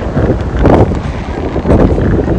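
Strong wind buffeting the microphone: a loud, rough rumble that rises and falls in gusts.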